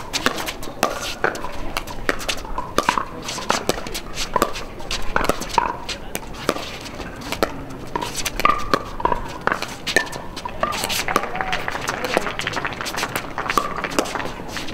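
Pickleball paddles hitting a plastic ball in a long rally: an irregular run of sharp pops, two or three a second. Voices talk in the background.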